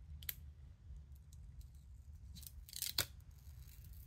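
Release liners being peeled off the adhesive strips on a replacement iPhone battery: a short click just after the start, then two quick rasping peels around two and three seconds in, the second the louder.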